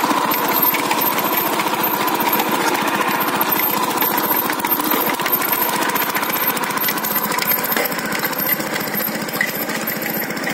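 Small air-cooled engine of a mini power weeder running steadily under load as its rotary tines till the soil, fading slightly toward the end as the machine moves away.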